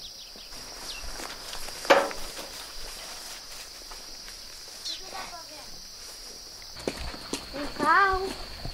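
Steady high-pitched drone of insects, with footsteps on dirt and a single sharp knock about two seconds in.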